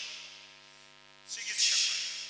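Steady electrical hum from the public-address sound system, with a sudden burst of amplified voice through the loudspeakers about a second and a half in.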